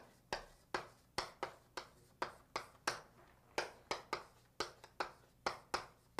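Chalk writing on a blackboard: an irregular run of short, sharp taps, about two or three a second.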